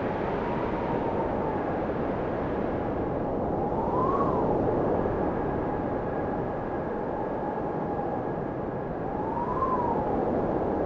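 Steady rushing wind-like noise, with a faint whine underneath that rises and falls in pitch about four seconds in and again near the end.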